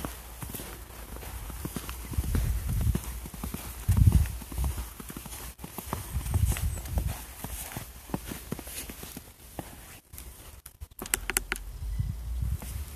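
Footsteps crunching through snow as a person walks along a wall, an irregular run of short steps. A few low rumbles break in, the loudest about four seconds in.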